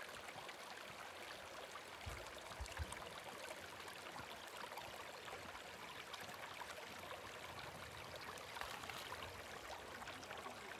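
Small, shallow mountain stream trickling over rocks, a faint steady babble. A couple of soft low bumps come between two and three seconds in.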